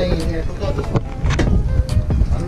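Indistinct background voices over a steady low rumble, with a few sharp clicks.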